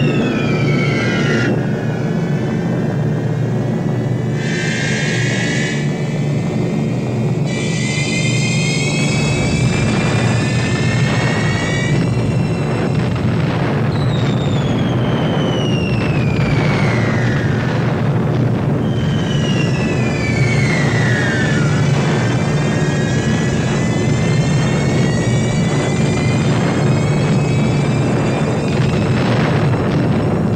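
Steady drone of massed multi-engine propeller bombers. Falling-bomb whistles glide downward over two to three seconds each, one near the start and two more in the second half. Scattered impacts of exploding bombs start about a third of the way in.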